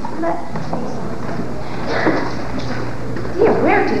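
Indistinct voices on stage over a steady low hum, with a short rising vocal sound near the end.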